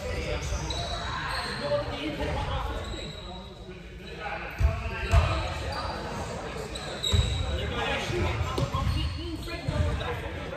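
A basketball bouncing on a hardwood gym floor, echoing in the big hall, with two hard bounces about halfway through and a few short high squeaks.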